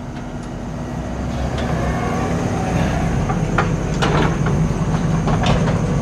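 Kubota compact track loader's diesel engine running and its tracks rattling as it drives closer, growing louder, with sharp metallic clanks and rattles in the second half.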